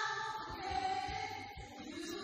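A woman singing held notes into a handheld microphone, with musical accompaniment behind her voice.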